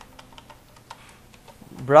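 Computer keyboard keys tapped quickly several times, faint clicks while text is deleted in a code editor.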